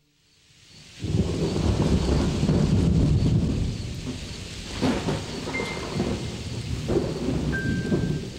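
Thunderstorm: heavy rain with rumbling thunder that comes in suddenly about a second in, with two sharper thunder cracks in the second half.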